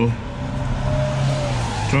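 Steady vehicle noise: a continuous low engine hum under an even hiss of road noise.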